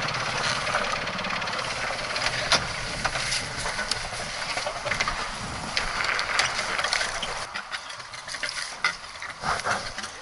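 Wind rushing on a head-mounted action camera's microphone, with scattered clicks and knocks of rope and fittings as a small sailing boat is moored alongside a wooden quay. The low wind rumble falls away about three-quarters of the way through, leaving the knocks clearer.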